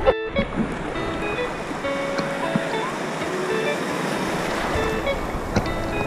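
Ocean surf washing around a camera held at water level: a steady rush of breaking water after a brief dropout at the start, with faint music underneath.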